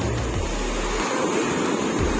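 Ocean surf breaking and washing up a shallow beach: a steady rushing of waves and foam.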